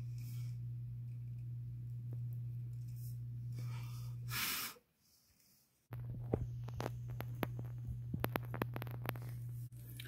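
Steady low hum with a few faint breaths, cutting out briefly near the middle. Then a run of small clicks and taps as the soldering iron tip and solder wire work against the ECM motor's circuit board, soldering a new thermistor lead onto a pad.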